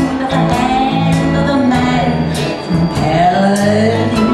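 A 93-year-old woman singing into a microphone over backing music, with steady bass notes and regular cymbal strikes keeping the beat.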